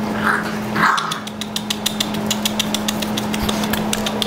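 Six-week-old pit bull puppies growling twice in short bursts as they tug at a toy, then a fast, even run of sharp clicks, about six a second, over a steady low hum.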